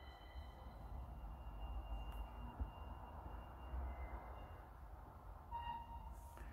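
Faint, soft ambient background music: a few long held high tones over a low hum and hiss.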